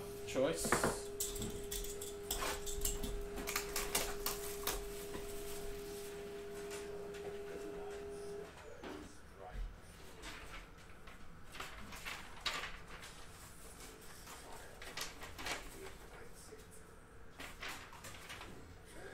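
Light handling noises, scattered rustles and taps, as a shrink-wrapped trading-card box is picked up and set down on a table. A steady hum runs underneath and stops about eight seconds in.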